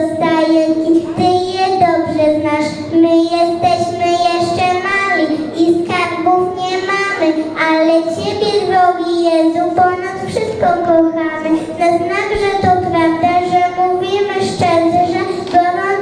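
A young girl singing a Polish Christmas carol solo into a microphone, in long held notes.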